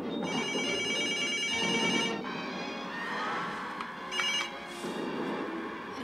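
A telephone ringing: one ring of about two seconds, then a brief second ring about four seconds in that breaks off, over the sound of a television.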